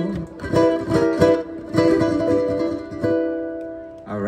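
Ukulele strumming the closing chords of a song: a handful of separate strums, the last one around three seconds in left to ring and fade away.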